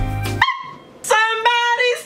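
Intro music that cuts off about a quarter of the way in, followed by a woman's voice holding long, high notes that step up and down in pitch.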